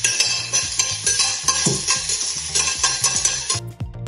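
Chopped onion sizzling in a hot frying pan as it is stirred, with light ticks of the utensil, over background music with a steady beat. The sizzling cuts off suddenly just before the end, leaving only the music.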